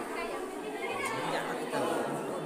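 Several people talking at once in a room: overlapping background chatter.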